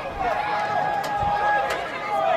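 Footballers shouting on the pitch: one long, held call, with two sharp knocks of a ball being struck, about a second in and near the end.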